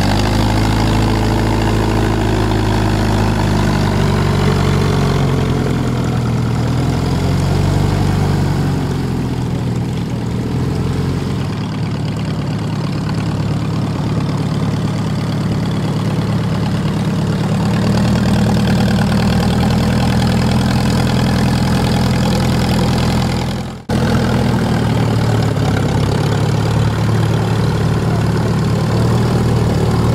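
Klemm 35D light monoplane's small four-cylinder inverted inline piston engine idling with the propeller turning as the aircraft taxies slowly on grass, a steady low drone. The sound dips sharply for an instant a little before the three-quarter mark.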